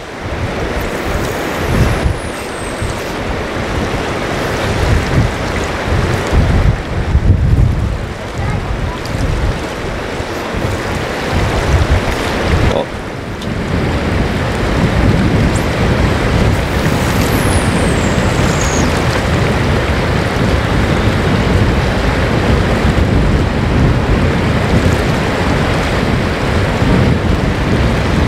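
Wind buffeting the microphone in uneven gusts over the steady rush of a fast, choppy river.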